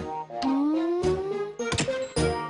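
Cartoon sound effect of a small toy missile being pulled open and its fins extending: a tone rising steadily in pitch for about a second, ending in a sharp click near the end. Steady background music plays behind it.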